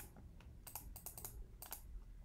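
Faint, irregular clicking of a computer keyboard and mouse in use, several separate clicks spread across the two seconds.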